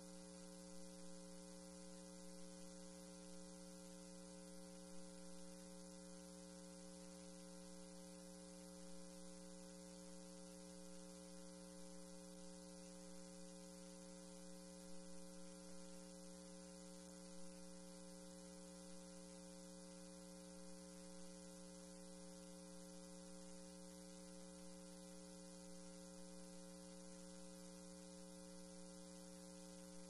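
Near silence: a steady electrical hum with a faint hiss over it, unchanging throughout.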